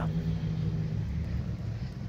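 A distant engine droning steadily, a low-pitched hum with no other clear events.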